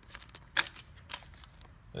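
Small plastic bag of steel M3 socket cap screws being handled: crinkling plastic and light metallic clicks, the sharpest about half a second in.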